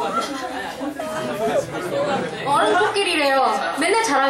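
Several people talking over one another, a mix of voices chattering in a large room.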